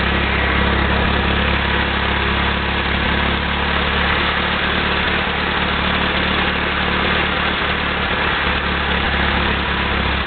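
Farmall H tractor's four-cylinder engine running steadily on wood gas (producer gas), loud and unchanging.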